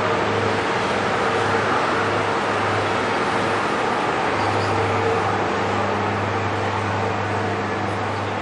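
Steady ambient background noise with a constant low mechanical hum, even throughout, with no distinct hoofbeats or other single sounds standing out.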